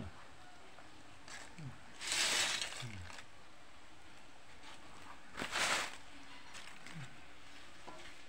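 Crisp fried banana chips rustling and crackling as a hand stirs through them in a plastic basket, in two short bursts: about two seconds in, and again at about five and a half seconds.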